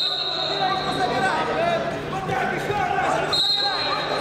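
Voices and shouts in a large hall, with a steady high-pitched tone at the start that returns near the end.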